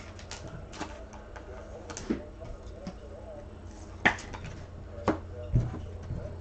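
Trading cards (2020 Optic football cards) being handled and flipped through by hand: about five sharp clicks and taps spread out over the few seconds, over a steady low hum.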